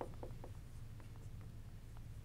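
Dry-erase marker writing on a whiteboard: a faint string of short strokes and taps. Most fall in the first half second, with a few more about a second in.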